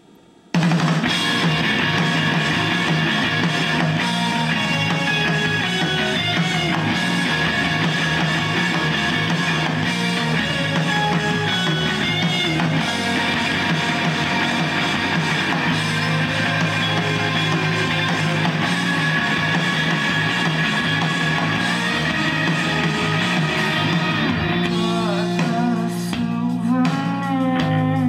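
Playback of a rock band's demo mix over studio monitors: drum kit, bass and guitars, starting abruptly about half a second in and running on at a steady level.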